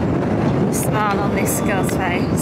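Strong wind buffeting the microphone, a steady low rumble, with people talking faintly behind it.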